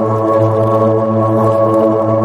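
Organ music holding one steady chord.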